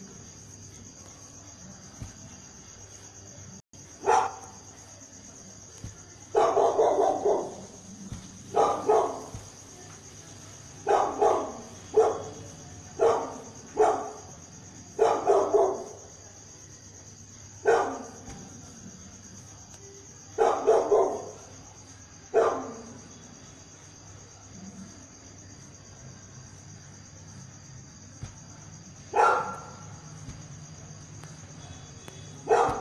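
A dog barking repeatedly, in single barks and short runs of two or three, then falling quiet for several seconds before one last bark near the end. A steady high-pitched whine runs underneath.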